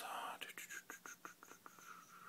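A man's faint whispering under his breath while thinking, with a quick run of soft mouth clicks.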